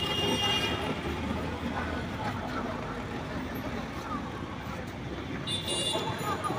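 Busy street traffic noise, with a vehicle horn sounding in the first second and again just before the end, and voices in the background.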